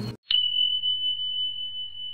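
A single high, pure bell-like tone strikes about a quarter second in and rings on at one steady pitch, slowly fading: the chime of an animated video intro.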